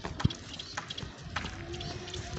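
Footsteps on a paved road while walking, a knock about every half second, the first one the loudest.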